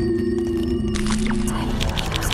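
Generative electronic music from an installation demo video: low sustained drone tones with thin high held tones over them. About a second in a burst of hiss comes in, giving way to a fast run of clicks.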